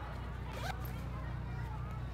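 A backpack zipper being pulled open: one short rising zip about a third of the way in, over a steady low hum.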